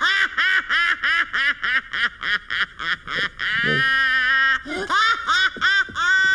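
An old woman cartoon character's shrill, squawking voice in rapid repeated syllables, a wordless scolding rant with a few longer drawn-out cries.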